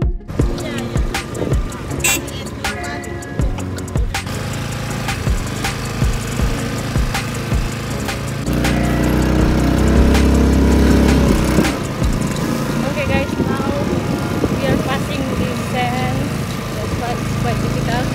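Small motorbike riding over a rough, sandy dirt track: its engine runs under wind noise on the microphone, with frequent bumps and rattles. A heavy wind rumble takes over for a few seconds in the middle, and voices come in now and then.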